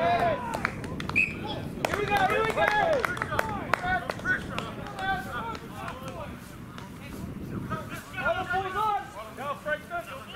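Rugby players shouting short calls to one another across an open field in scattered bursts, with a few sharp knocks among them.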